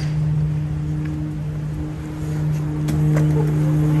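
Road tractor's diesel running with the PTO engaged to drive the belt trailer's hydraulics: a steady, even-pitched hum over a low rumble that grows a little louder about two-thirds of the way through.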